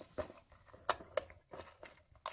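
Winding key on the back of a polymer AK 75-round drum magazine being turned by hand to tension the feed spring, giving a few sharp, irregular clicks.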